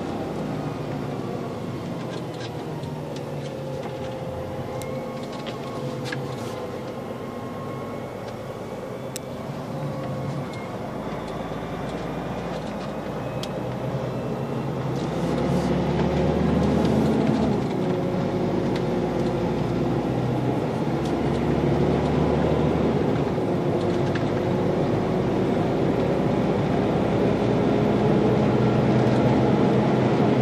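Inside the cab of a Volvo FH16 660 truck on the move: the big straight-six diesel running over steady road noise, its note drifting up and down. It gets louder about halfway through.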